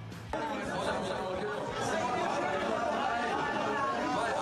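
A group of celebrating footballers shouting and singing over one another in a crowded room, starting abruptly about a third of a second in.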